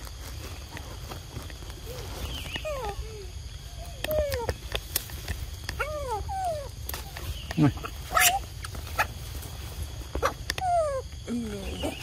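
Baby macaques calling: a series of short, high calls that each slide down in pitch, coming every second or two, with a few sharp clicks between them, the loudest about eight seconds in.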